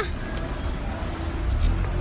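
Street noise: a low, steady rumble of road traffic.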